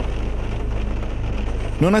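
Rain falling on a car's windscreen, heard from inside the car, as an even hiss over a steady low rumble. A man's voice starts speaking near the end.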